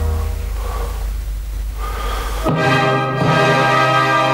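Recorded orchestral music played from a laptop over the hall's speakers: held orchestral chords, one dying away, then a new full chord entering suddenly about two and a half seconds in.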